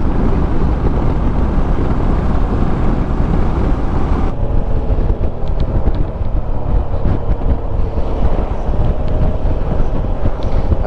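Wind rushing over the microphone of a moving Suzuki V-Strom 650 XT, with the bike's V-twin engine running underneath. About four seconds in the wind noise eases and the engine note comes through more clearly.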